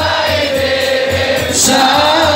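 Men's voices singing an Arabic devotional chant (sholawat) together in a long, drawn-out melody, over a low regular beat about three times a second.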